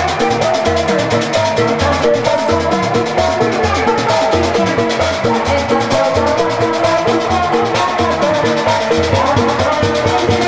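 Live Sundanese kuda renggong band music: a steady drum beat of about two beats a second under a sustained melodic line, playing without a break.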